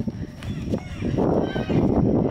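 Running footsteps on grass with rough, uneven rumble from the handheld camera jostling and wind on its microphone. The rumble grows louder about a second in.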